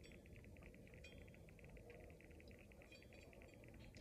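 Near silence: quiet room tone inside a car, with a faint, fast, high-pitched pulsing running steadily throughout.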